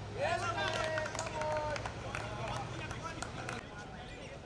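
Men's voices shouting on a cricket field as a wicket falls: one long drawn-out call starts about half a second in, followed by scattered shorter shouts.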